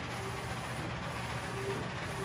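DTF transfer printer running, a steady mechanical hum and whir as it prints onto clear film.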